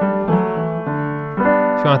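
Piano playing a riff of held chords over a low D, moving to a new chord about a third of a second in and again about a second and a half in. The riff goes from a G-over-D chord to D.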